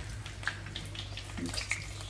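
Vegetables frying in a pan, a sizzle with scattered crackles, over a low steady hum.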